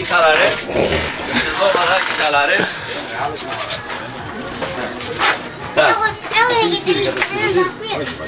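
Several people talking, with voices overlapping and no single clear speaker.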